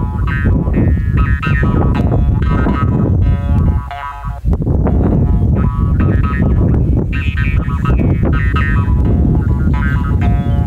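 Mouth harp (jaw harp) being played by mouth and finger: a steady buzzing drone under shifting high overtones that carry the tune, with quick repeated plucks. There is a brief break about four seconds in.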